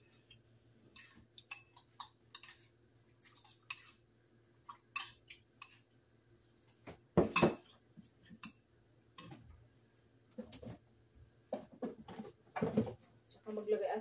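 A metal spoon clinking and scraping against a ceramic bowl in short, irregular strokes while mixing a pork marinade, with a louder knock about seven seconds in and another near the end.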